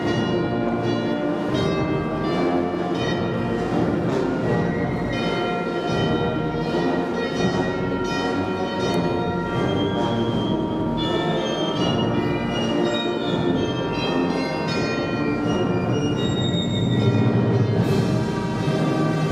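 A procession band playing a hymn in a reverberant church, with church bells ringing over it.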